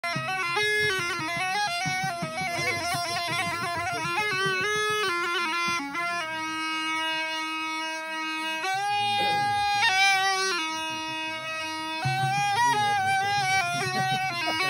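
A traditional flute playing a solo, ornamented melody that steps between notes and holds one long note in the middle, with a bright, reedy tone.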